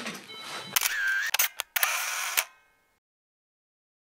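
Camera handling noise with a few sharp clicks as the handheld camera is swung away and the recording stops, then silence for the last second and a half.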